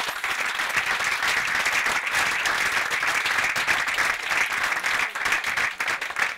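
Audience applauding: many people clapping at once, loud and steady throughout.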